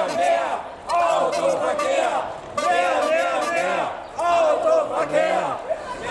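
A crowd of demonstrators chanting a slogan in unison, in loud shouted phrases about a second long with short breaks between them.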